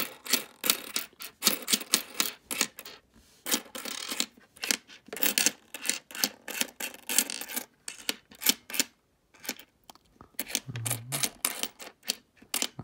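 Canadian nickels clicking and clinking against one another and the tabletop as a freshly unrolled stack is slid apart and spread out by hand: many quick, irregular metallic clicks, with a brief lull about three-quarters of the way through.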